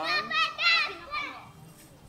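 Children's high-pitched voices calling out, loudest in the first second and then fading away.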